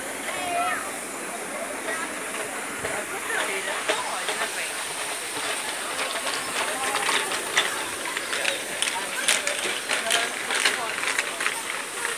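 Indistinct chatter of people over a steady hiss, with a run of sharp knocks through the second half that fit footsteps on wooden bridge planks.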